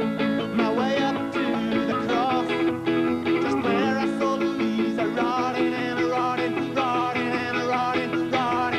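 Live folk-rock music led by guitar, playing on without a break.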